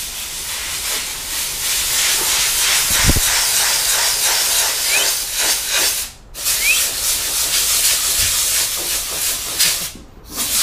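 Steady, loud hiss, broken by a brief dropout about six seconds in.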